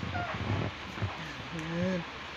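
A one-year-old baby vocalizing: a couple of short squeaks in the first second, then a drawn-out, wavering whiny coo from about a second and a half in. Clothing and a blanket rustle under it.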